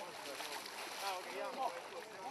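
Several people's voices talking at a distance, over the splashing of bare legs wading through shallow lake water.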